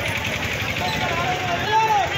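Men shouting slogans over a steady rumble of street traffic.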